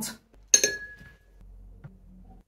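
A paintbrush clinks once against a glass water jar about half a second in, leaving a short ringing tone as the brush is wetted for a lighter swatch.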